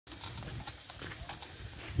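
A pair of bullocks pulling a steel-tined wheeled cultivator through loose tilled soil: faint, irregular clicks and scrapes of hooves, footsteps and the implement over a steady low rumble.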